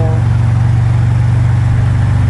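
Harley-Davidson touring motorcycle's V-twin engine running at steady highway cruising speed, a low even drone, with wind rushing over the microphone.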